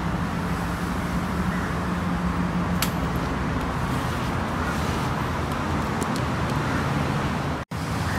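A steady low motor hum with one sharp click about three seconds in; the sound cuts out abruptly just before the end.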